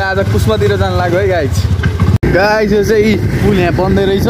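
Talking, not caught by the transcript, over a steady low rumble, broken by a sudden momentary dropout at an edit about two seconds in.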